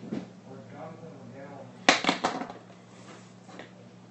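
Ballpark background sound: faint distant voices over a steady low hum, with a sharp knock and two lighter clicks about two seconds in.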